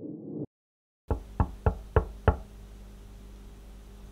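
A swelling tone cuts off suddenly, then after a moment of silence come five quick, slightly uneven knocks, over a steady low hum and hiss.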